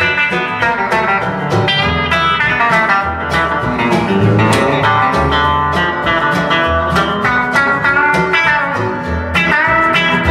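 Live blues-country band playing, led by a Telecaster-style electric guitar picking a busy lead line over bass notes and strummed guitar. The guitar bends notes upward near the end.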